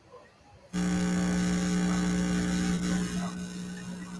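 Electrical mains hum, a steady low buzz with a stack of overtones, that cuts in suddenly under a second in over a video-call audio feed and holds, easing slightly near the end.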